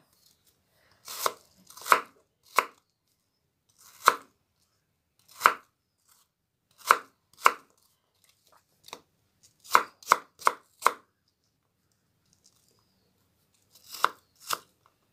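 Kitchen knife dicing apple on a cutting board: about a dozen separate chops, irregularly spaced, some coming in quick runs of two to four.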